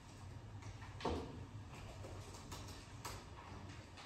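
Quiet room tone with a steady low hum, broken by a soft knock about a second in and a couple of faint clicks later on.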